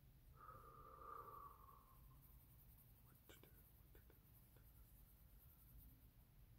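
Near silence: a coloured pencil working faintly on paper, with a few light taps in the middle. A brief faint voice-like hum sounds in the first two seconds.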